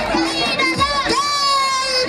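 A boy's high-pitched voice shouting into a microphone and coming out through a loudspeaker system, holding one long note about halfway through, with a crowd behind.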